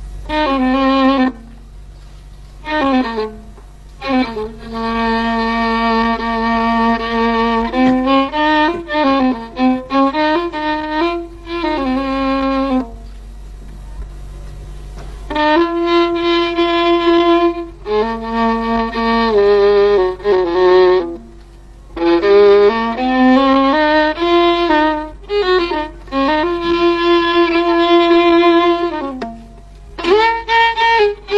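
Solo violin playing an Arabic taqsim, an improvised melodic prelude. It plays long held notes that waver with vibrato and slide between pitches, in phrases broken by short pauses, the longest about thirteen seconds in.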